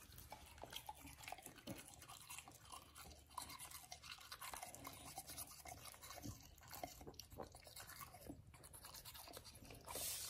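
Faint scrubbing of a toothbrush's bristles on a pit bull's teeth: a run of soft, irregular scratchy clicks.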